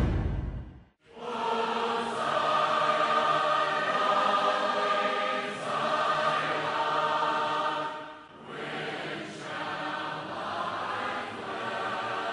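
A choir singing long, held chords. It comes in about a second in, after the previous sound fades to a brief silence.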